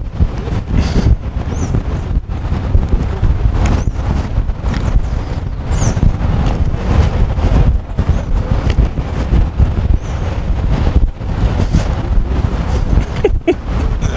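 Outdoor noise: wind rumbling on the microphone, mixed with passing street traffic.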